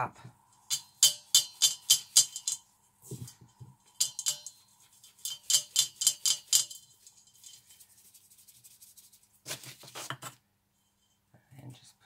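Plastic bath bomb mould being scooped and packed with crumbly bath bomb mixture in a stainless steel bowl: quick gritty scrapes and clicks, about three or four a second, in two bursts, then a softer rustle near the end.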